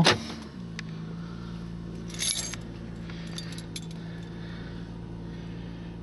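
Car engine idling, heard inside the cabin as a steady low hum, with a sharp click right at the start and a brief metallic jingle about two seconds in.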